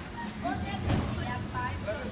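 Children's voices in the street, soft and scattered, with one dull thump about a second in.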